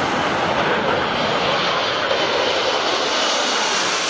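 Aermacchi MB-339 jets of the Frecce Tricolori, the Italian Air Force aerobatic team, passing overhead: a loud, steady jet roar.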